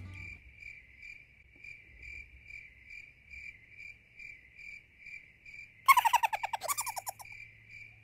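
Cricket chirping steadily, about two chirps a second. About six seconds in, a loud burst of rapid squirrel chattering lasts about a second and a half.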